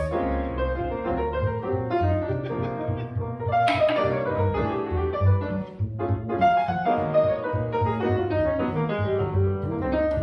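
Grand piano playing jazz lines, with an upright double bass playing low notes underneath. The loudness dips briefly about halfway through.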